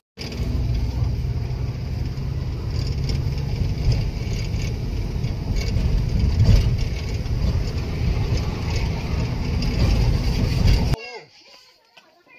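A van driving along a road, heard from inside: a steady engine and road rumble that cuts off suddenly about eleven seconds in.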